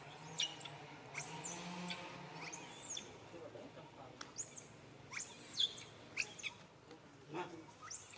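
A series of short, high-pitched chirping squeaks, each a quick rising-and-falling call, coming every half second to a second or so.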